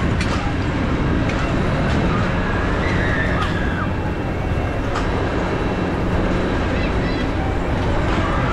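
Steady low machinery hum with distant voices and calls mixed in: outdoor carnival ambience around a turning Ferris wheel.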